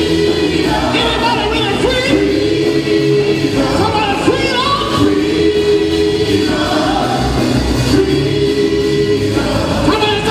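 Gospel praise team singing together into microphones, women's and men's voices in harmony, in long held phrases.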